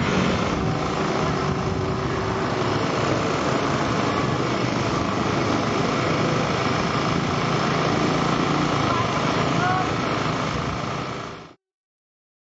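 Komatsu hydraulic excavator's diesel engine running steadily while it digs, a constant low engine note under outdoor noise. The sound fades out near the end.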